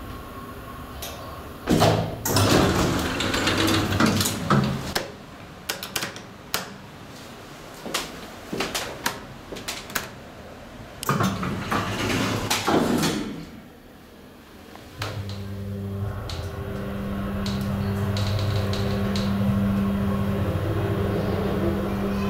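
Clattering and knocks as the elevator doors work, then, from about halfway, the steady low hum of a DEVE hydraulic elevator's machinery as the car travels between floors, growing slightly louder toward the end.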